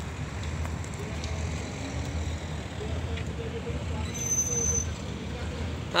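Road traffic on a town street: a steady low rumble of passing vehicles, with a brief high-pitched whine about four seconds in.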